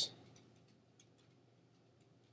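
A few faint computer mouse clicks, the clearest about a second in.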